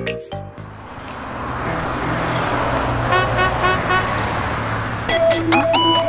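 A motor-vehicle sound effect, a steady low engine hum with a swelling rush of noise, rises after the last note of a children's song, with a few short beeps about three seconds in. About five seconds in, upbeat electronic music with crisp clicks starts.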